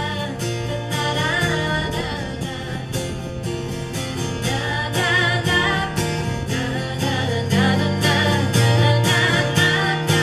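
A live acoustic song: an acoustic guitar strummed in a steady rhythm over sustained keyboard chords, with two women's voices singing. The music swells a little louder in the last few seconds.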